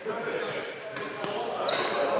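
Badminton rally in a sports hall: two sharp racket hits on a shuttlecock about a second in, and a brief high squeak typical of a shoe on the court floor near the end, over background voices.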